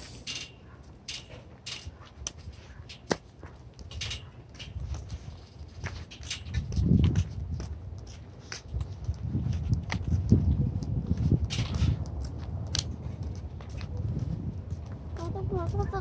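Wind rumbling on the microphone in uneven gusts, with scattered light clicks. A voice starts near the end.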